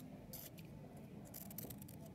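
Scissors cutting through painted paper: a few faint snips in the first half, then quieter.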